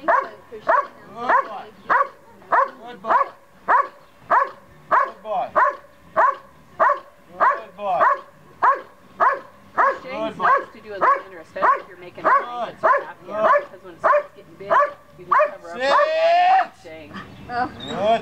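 Dobermann barking steadily at a helper in the blind, about two barks a second, in the hold-and-bark of IPO protection work. The barking tails off near the end with a longer rising sound.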